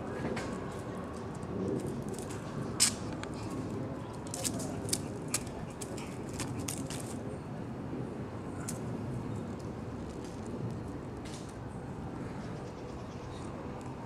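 Steady low outdoor background noise with a few sharp clicks and taps, the loudest about three seconds in and a cluster a little later.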